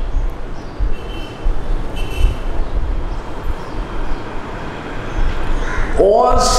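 A steady rumbling noise with a hiss, uneven in loudness, with a few faint short high tones over it.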